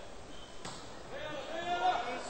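A volleyball struck once with a sharp hit about two-thirds of a second in. Voices in the hall follow and grow louder towards the end.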